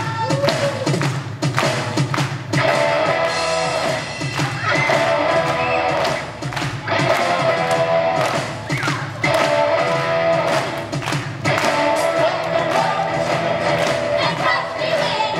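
Live rock band with electric guitars, drum kit and keyboard playing loudly, with a group of voices singing in phrases of about two seconds separated by short breaks.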